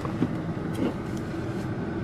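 Steady hum of a car idling, heard from inside the cabin, with a few faint clicks.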